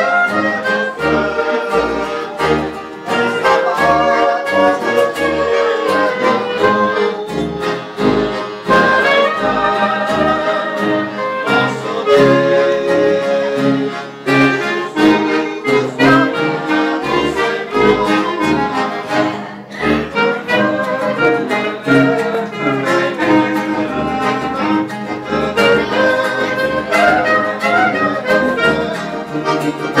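A small acoustic ensemble of accordion, clarinet, nylon-string guitar and brass horn plays a hymn tune together in unison, with steady low bass notes on the beat.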